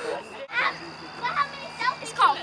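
Faint children's voices calling out a few times over a steady low hum.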